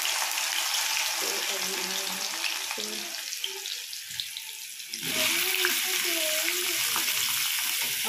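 Hot oil sizzling loudly in a pan as boiled potato cubes are tipped into oil with cumin seeds; the sizzle eases a little, then surges again about five seconds in as more potatoes slide in off the plate.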